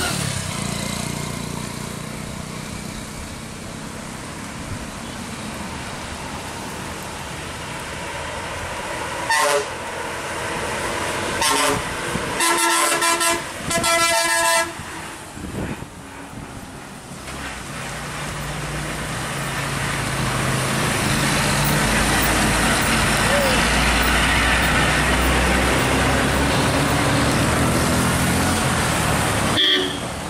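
A bus's horn sounds in a run of blasts about ten seconds in, two short ones and then two longer ones. After that the bus's diesel engine grows loud and heavy as it works round the hairpin bend close by, staying loud through the last ten seconds.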